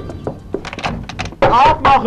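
A person's shrill cry, wavering in pitch, breaks out about one and a half seconds in and is the loudest sound, after a few scattered knocks and thuds.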